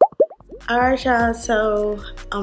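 Quick rising cartoon 'bloop' sound effects, about four in a row within the first half second.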